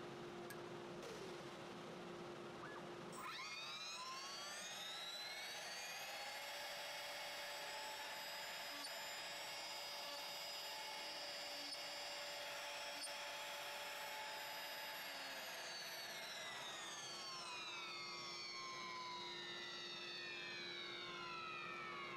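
CNC router spindle spinning up with a rising whine about three seconds in, holding a steady high whine while its 90-degree V-bit drills a pilot-hole toolpath, then winding down with a long falling whine over the last few seconds. A steady low hum runs underneath.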